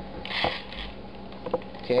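String being pulled through a small hole in a plastic soda bottle, with handling of the bottle: a short rasp about half a second in with a click, and another light click about a second and a half in.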